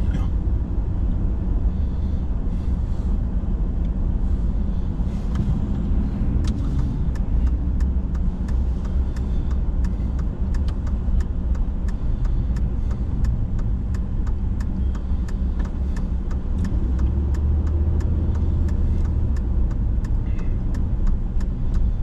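Road noise inside a moving car's cabin: a steady low rumble of tyres and engine, with many small ticks over it.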